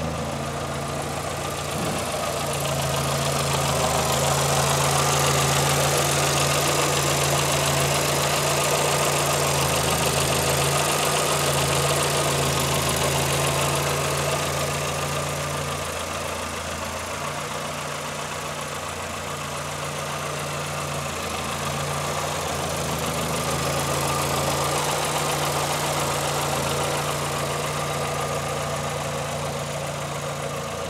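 The 1965 Morris Minor 1000's 1098cc four-cylinder engine idling steadily.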